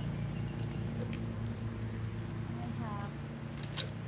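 Steady low drone of lawn-mower engines running at a distance, with a brief faint pitched call about three seconds in and a few light clicks near the end.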